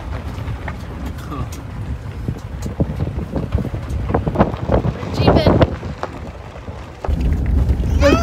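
A Jeep driving on a rough dirt road: a steady low rumble with scattered knocks and rattles, and wind buffeting the microphone at the open window. A short burst of a person's voice about five seconds in; about seven seconds in the rumble suddenly gets louder.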